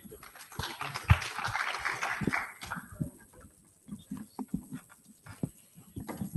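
Footsteps on a stage floor as a man walks to the podium, heard as irregular low knocks, with a rustling noise during the first three seconds.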